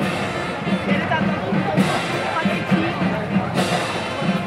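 Marching band music with a steady, repeating drum beat, mixed with crowd voices.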